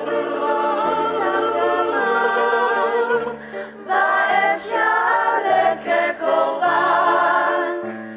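Mixed group of men and women singing a cappella in close harmony, a low bass line holding each note for about a second under the chords.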